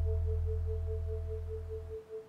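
A steady pure tone near 432 Hz with a fast, even wobble, over a low hum, slowly fading out. This is a synthesized meditation drone of the healing-frequency kind.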